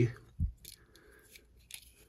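Faint small clicks and taps of a folding knife's handle parts and a small Torx screwdriver being handled, with one low thump about half a second in.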